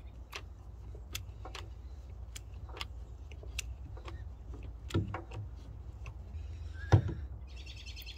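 Hand-held hydraulic crimping tool being pumped to crimp a heavy lug onto a battery cable: short, sharp clicks about two or three a second as the handle is worked, with a louder knock near the end as the dies close down as far as they will go.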